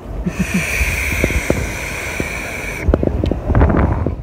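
A long draw on a Geekvape Athena vape: about two and a half seconds of steady airy hiss as air is pulled through the device, cutting off abruptly. Wind rumbles on the microphone throughout, with a short laugh near the start and a few knocks near the end.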